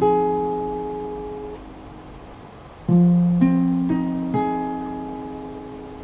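Acoustic guitar sounding an F minor 7 chord picked as a slow arpeggio with the notes left to ring. The top note is plucked right at the start and decays. About three seconds in, the chord is picked again one string at a time from the bass up, four notes, each ringing on.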